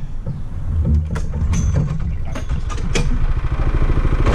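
Small gasoline engine of a line-striping machine running steadily, with scattered sharp clicks over it.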